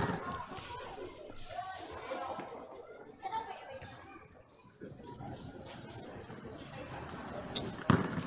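Faint, indistinct voices with a few light knocks, and a sharp basketball bounce near the end as a player starts dribbling.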